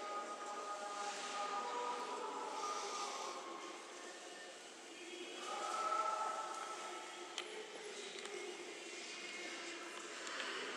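Distant voices echoing through a large church interior, some as long held tones, over a low reverberant murmur. A single sharp click comes about seven seconds in.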